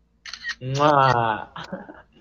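A man blowing a kiss: a couple of quick lip smacks, then a long drawn-out vocal sound lasting about a second.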